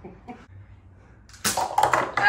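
Quiet for about a second and a half, then a sudden cluster of sharp clicks and knocks: a toy blaster firing and hard plastic cups being knocked off a stack and clattering down.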